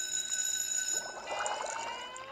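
A steady high ringing tone made of several pitches, cutting off about a second in, followed by a slow rising whistle-like glide of several parallel pitches.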